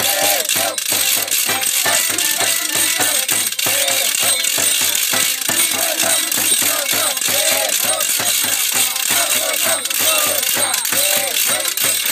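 Live folk percussion from a Romanian New Year goat-dance troupe: a steady fast beat of about four strokes a second, with dense rattling and clacking over it.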